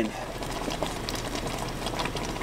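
Pot of sauce simmering on a butane camp stove: a steady bubbling hiss with faint small clicks as cooked penne is tipped in from a plastic tub with tongs.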